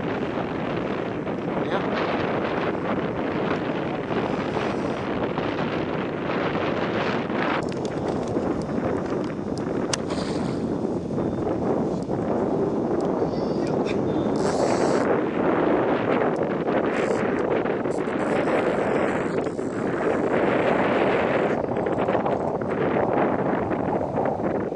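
Wind buffeting the camera microphone on an open boat: a steady rushing noise with a few short crackles.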